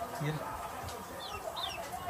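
Domestic hen clucking, with a few short, falling high chirps from small birds.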